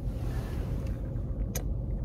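Steady low road rumble inside a car cabin, with one short sharp click about three-quarters of the way through.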